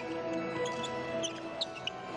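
Arena background music with held notes, and the short high squeaks of players' shoes on the indoor handball court, several times.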